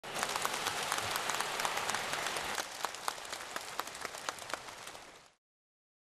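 Large audience applauding, dense clapping that thins out and grows quieter about two and a half seconds in, then fades away near the end.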